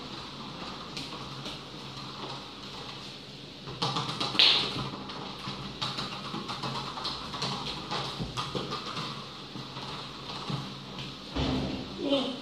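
A soccer ball dribbled with bare feet on a tiled floor: irregular soft taps of foot on ball and ball on tile, starting about four seconds in, with one brief high squeak among them.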